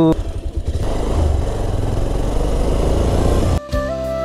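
Motorcycle running on the road with engine and road noise during a ride. It cuts off suddenly near the end, giving way to flute music.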